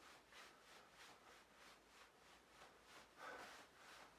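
Near silence: room tone, with one faint short sound a little over three seconds in.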